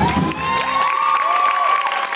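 Audience cheering and whooping as a song ends. The accompaniment's last chord stops just under a second in, and the shouts of many voices carry on above it.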